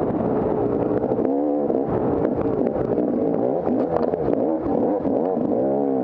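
250cc enduro dirt bike engine, its revs rising and falling sharply over and over as it is ridden hard on a rough trail, with quick rev-ups about a second and a half in and near the end. Short knocks and clatter from the bike over the rough ground run through it.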